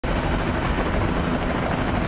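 AH-1J Cobra attack helicopter flying past, its rotor and turbine noise a loud, steady rush.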